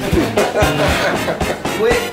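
Background music with held low notes and a beat, with a voice briefly over it.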